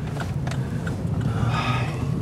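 Steady low drone of a car's engine and road noise heard inside the cabin while driving, with a few light clicks and a brief rustle near the end.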